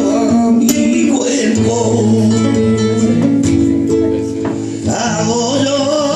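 Live flamenco music: a flamenco guitar is played with held notes and strummed chords, with a few sharp percussive strikes. A man's flamenco singing comes in again near the end.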